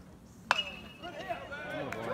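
A metal baseball bat hitting a pitched ball about half a second in: one sharp ping that rings on for about a second. Spectators' voices then rise and grow louder.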